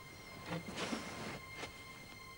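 Faint breathing of a man asleep: a short low grunt about half a second in, then a long breathy exhale, and a small click near the end.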